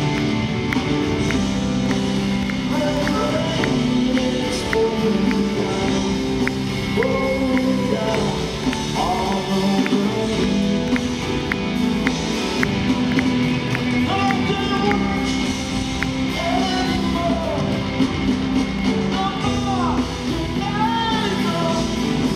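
Live rock band playing in an arena, heard from the audience: sustained keyboard and bass chords under gliding melody notes, with a steady pulse of about two beats a second.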